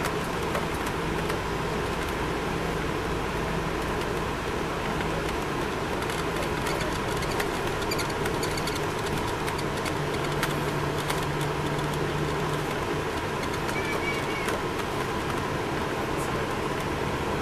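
Cabin noise inside a 2002 MCI D4000 coach under way: its Detroit Diesel Series 60 engine and road noise make a steady drone, with a low hum that drops slightly in pitch for a couple of seconds near the middle.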